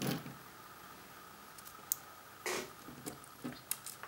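Faint clicks and taps of small metal hand tools and a plastic PGA ZIF socket being handled, with one short, louder scrape a little past halfway.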